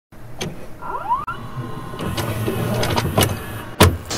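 Produced intro sound effects: a low rumble under a series of sharp clicks, with short rising whines about a second in and the loudest hit near the end.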